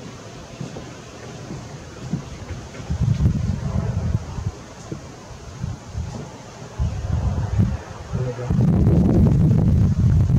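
Wind buffeting the camera's microphone: a low, gusty rumble that comes in bursts from about three seconds in and holds steady over the last second and a half.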